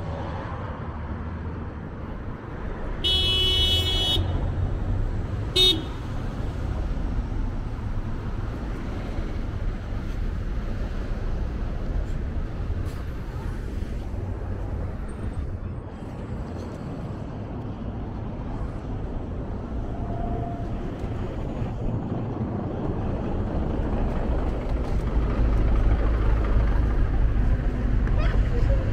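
City street traffic with a steady low rumble. About three seconds in a vehicle horn sounds one long toot, followed by a short second toot about a second and a half later.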